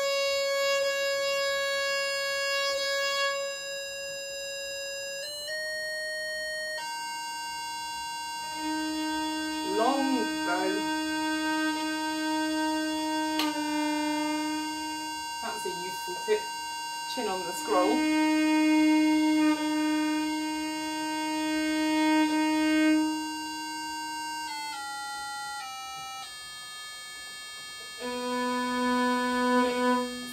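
Treble viol being tuned with long, steady bowed notes on the open strings. The top D string steps up in pitch over the first few seconds as its peg is adjusted, then a lower string is held against a higher one, its pitch shifting slightly as it is brought into tune.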